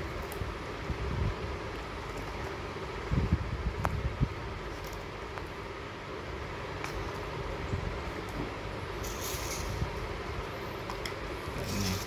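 Paper takeaway cups and cardboard food boxes being handled and set down on a stone floor, over a steady background rumble. There are a few soft knocks about three to four seconds in, and a brief papery rustle later on.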